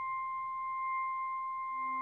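Contemporary chamber music: a single high, nearly pure note held steady and soft, with lower notes coming in near the end.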